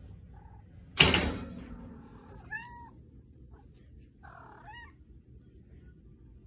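A single loud thump about a second in, then a calico cat trilling twice with her mouth closed: short chirps that rise and fall in pitch.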